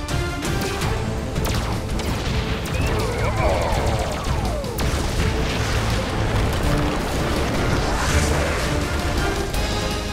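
Dramatic action music with booming explosions layered over it, the soundtrack of a giant-robot battle.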